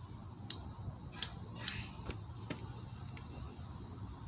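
A handful of short, sharp clicks, about six spread over three seconds, two of them followed by a brief hiss, over a low steady hum.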